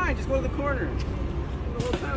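Indistinct speech over a steady low background rumble.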